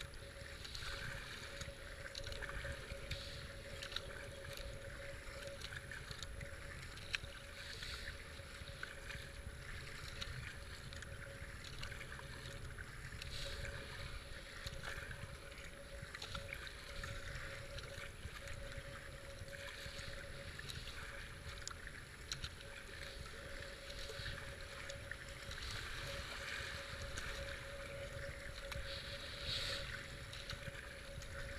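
Kayak paddle strokes splashing about once a second in fast-flowing floodwater, over a steady rush of current past the hull. Wind rumble on the GoPro's microphone and a faint steady hum run underneath.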